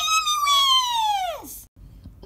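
A child's long, high-pitched squeal that holds its pitch, then slides steeply down and cuts off about a second and a half in.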